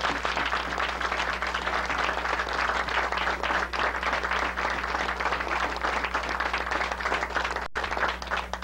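Small audience applauding, many hands clapping in a dense, steady clatter, over a low electrical hum; the sound drops out for an instant near the end.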